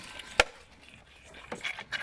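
A single sharp knock on the wooden fence rails about half a second in, then a few softer knocks and clicks near the end, as moose calves jostle at the fence.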